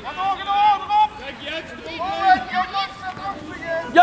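Children shouting on the field during play: a string of high-pitched calls, one after another.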